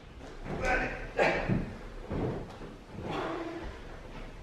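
Faint, indistinct voices with light knocks and handling bumps, as a heavy subwoofer box is lifted into a car's boot.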